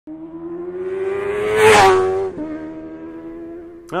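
A vehicle engine sound rising steadily in pitch, with a loud rushing swell about one and a half seconds in and a slight drop in pitch after it, then holding a steady tone until it stops just before the end.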